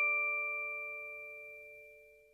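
The ringing tail of a struck bell-like metal chime note, a few pure tones sounding together and fading away evenly until they die out near the end.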